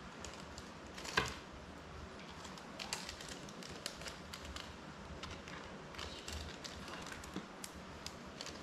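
Light, irregular clicks and taps of small tools and drone parts being handled on a workbench, with one louder knock about a second in.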